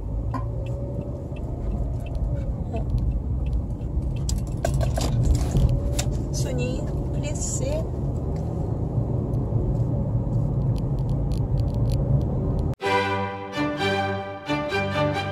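Steady low road and engine rumble heard from inside a moving car, with a few light clicks and rattles. Near the end it cuts off suddenly and violin music begins.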